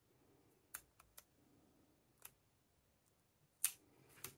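Masking tape being handled and pressed onto a guitar fingerboard: a few faint, short crackles and clicks, the loudest near the end, otherwise near silence.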